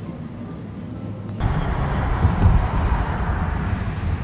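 A quiet low hum, then about a second and a half in, a sudden cut to loud, steady rumbling road noise of a moving car, heard from inside the vehicle.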